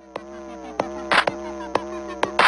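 Buzzing electronic drone with a steady pitch, its overtones dipping and sliding. Sharp percussive hits land every half second or so, the loudest just over a second in.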